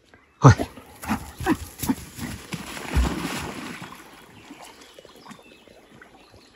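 A dog giving several short, sharp yelps of excitement in the first two seconds, then a thump and a spell of splashing as it goes into the water and starts swimming.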